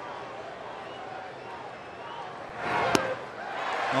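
Ballpark crowd murmuring, then rising as the two-strike pitch comes in; a single sharp pop of the baseball striking the catcher's mitt about three seconds in on the swinging strike three, followed by the crowd cheering louder.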